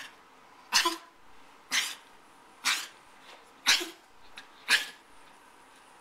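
Short, sharp snorts from a dog, five of them about a second apart.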